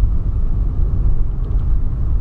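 Volkswagen Polo Sedan on the move, heard from inside the cabin: a steady low rumble of road, tyre and engine noise.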